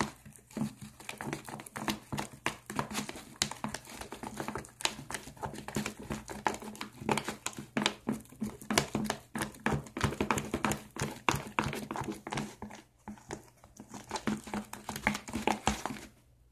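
Plastic spatula stirring a thick, sticky slime mixture of glue and cornstarch in a plastic tub, making a rapid, irregular run of wet clicks and crackles.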